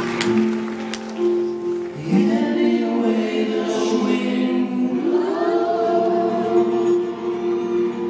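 Three singers, one male and two female, singing long held notes in harmony through a live PA, with voices sliding up into new sustained notes about two seconds in and again about five seconds in.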